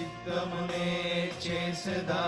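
Men singing a Telugu Christian worship song, with held, chant-like sung lines over steady sustained backing tones.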